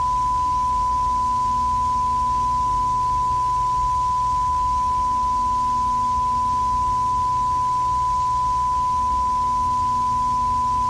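Steady 1 kHz line-up test tone, the reference tone that goes with television colour bars, held unbroken at one pitch over a low rumble and faint hiss.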